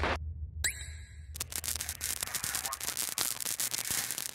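Bass-heavy trailer music cuts off at the start, followed by a brief rising electronic sweep. Then comes a steady crackling static effect, like a glitching screen or vinyl crackle, under the title cards.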